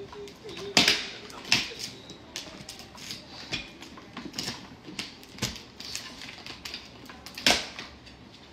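Irregular clicks and knocks of things being handled in a kitchen, with sharper knocks about a second in, at a second and a half, and near the end.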